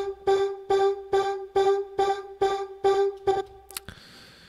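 Harmor synthesizer playing its 'Art of Voice' vocal preset, a sung 'pam' sample, with chorus added: about nine short notes on the same pitch, G, roughly two a second. The chorus gives it a vocal-synth character.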